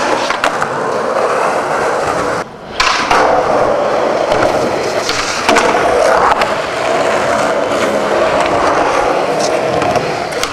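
Skateboard wheels rolling on the smooth concrete floor of a parking garage, a steady rolling noise broken by a few sharp clacks of the board hitting the ground. It drops out briefly about two and a half seconds in.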